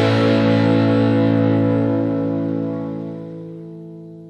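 Distorted electric guitars hold the song's final chord, ringing out and fading away gradually.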